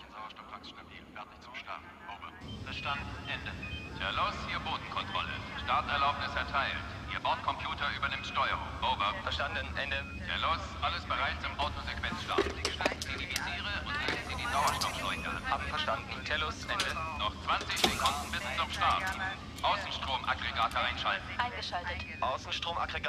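Indistinct voices over a steady low hum that comes in about two seconds in.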